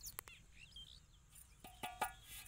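Faint bird chirps in quiet outdoor surroundings, with a few sharp clicks and a short pitched call near the end.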